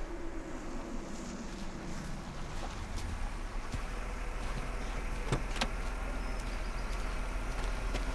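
A car driving up a dirt road and pulling up, its engine and tyres rumbling steadily louder as it comes closer. A car door clicks open about five and a half seconds in.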